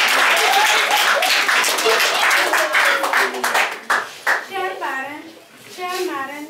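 A roomful of people clapping, with voices mixed in; the clapping dies away about four seconds in, and a single voice then speaks.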